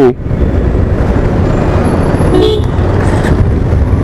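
Motorcycle engine running at low speed in slow city traffic, a steady low rumble, with a short car horn toot a little past halfway.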